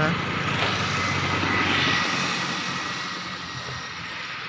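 A motor vehicle passing, its engine and road noise building to a peak a second or two in and then slowly fading away.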